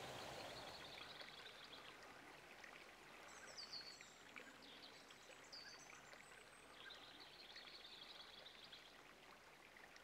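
Very faint outdoor nature ambience: a soft steady hiss with a few thin, high bird calls, short falling whistles and brief trills.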